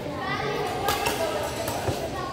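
Badminton racket striking a shuttlecock with a sharp crack about a second in, and a duller thud near the end, in a rally of doubles play.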